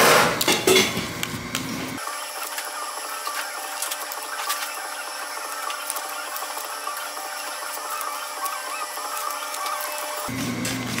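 Paper rustling and crackling as stickers are peeled from their backing and pressed onto paper bags. It is loudest in the first second, then settles into small scattered clicks and rustles. From about two seconds in the sound is thin, with its low end cut away.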